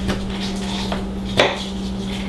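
Kitchen knife chopping pickles on a cutting board: a few sharp knocks of the blade against the board, the loudest about one and a half seconds in.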